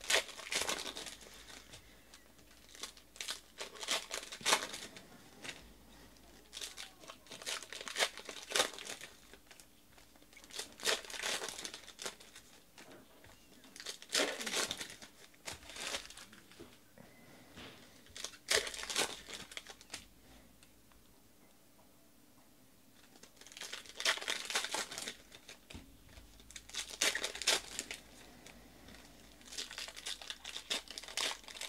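Foil wrappers of Donruss Optic football card packs crinkling and tearing as the packs are ripped open, in repeated bursts every few seconds with a lull of a few seconds past the middle.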